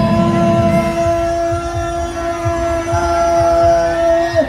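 One long held note, steady in pitch, lasting the full four seconds, over scattered low thumps.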